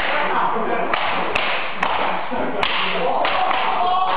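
Cloth jiu-jitsu belts whipped across a bare back: four sharp slaps, one at the start and the rest between about one and a half and three seconds in. Under them runs the noisy chatter and shouting of onlookers.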